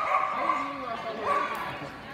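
Small Kromfohrlander dog barking while running an agility course: two high-pitched yips, one right at the start and another about a second and a half in.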